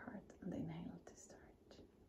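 A woman's soft, near-whispered voice chanting the closing "shanti", with one held note about half a second in, fading to quiet after about a second.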